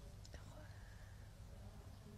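Faint whispering over a steady low hum.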